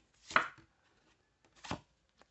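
Two short, sharp clicks from a deck of oracle cards being handled: a louder one about a third of a second in and a fainter one near the end.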